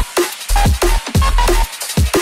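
Jump-up drum and bass music: fast, driving drums over a heavy sub-bass that cuts out briefly at the start and again near the end.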